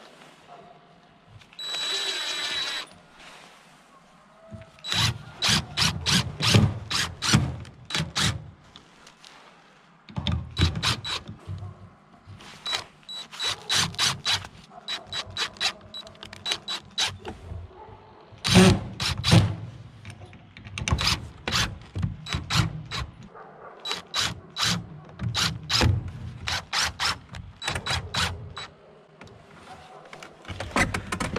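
Cordless impact driver driving screws into wood framing lumber. There is a brief steady motor whine about two seconds in. Then, from about five seconds in, come repeated runs of rapid hammering clicks as the driver's impact mechanism drives the screws home, with short pauses between screws.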